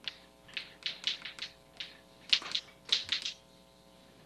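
Chalk tapping and scratching on a blackboard as words are written: a quick, uneven run of short strokes, loudest a little past the middle.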